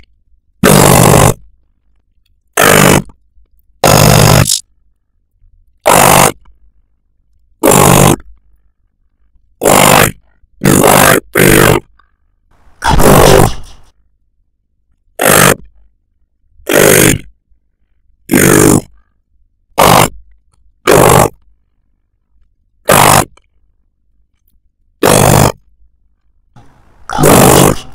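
A string of about sixteen short, loud, distorted noise blasts, each under a second long, coming at irregular intervals of one to two seconds with silence between them.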